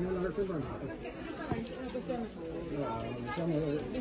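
Background chatter: other people talking, fainter than a close voice and not clearly made out.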